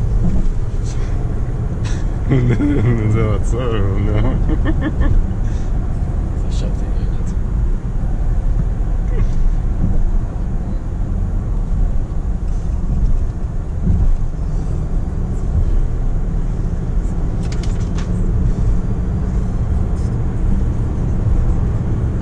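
Interior noise of a 2019 Range Rover Sport SDV6 (3.0-litre V6 diesel) driving along at steady speed: a steady low engine and road rumble in the cabin.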